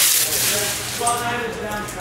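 A man's voice holding a long, drawn-out hesitation sound, an 'uhh', at a fairly steady pitch, with a brief crinkle of a foil card-pack wrapper fading out at the start.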